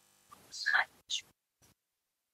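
A brief, soft, breathy vocal sound lasting about a second, with a short hiss near its end, then sudden dead silence as the call's noise suppression cuts in.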